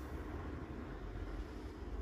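Steady low background rumble, with no distinct event.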